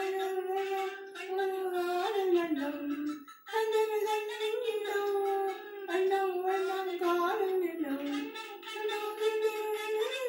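An elderly woman singing a slow melody alone, without accompaniment, holding long notes and sliding between pitches. She sings in phrases of a few seconds with short breaths between them.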